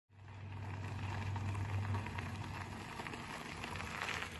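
Bicycles rolling along a gravel road: a steady hiss of tyres with faint scattered ticks, over a low hum that fades after about two seconds.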